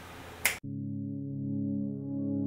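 A single finger snap about half a second in, then an abrupt cut to ambient synthesizer music holding one sustained chord.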